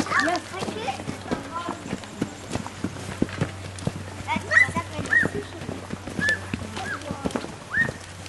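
Footsteps of a group of children walking up muddy ground, with their voices. From about halfway on, short high yips sound several times, roughly one a second.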